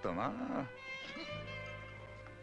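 A man's strained, wavering wordless groan for the first half-second or so, then background music with long held tones.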